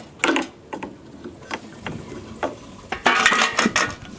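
Handling noise of a mower pull cord being unhooked from its plastic guide on the handle: scattered clicks and knocks, then a longer rattling scrape about three seconds in.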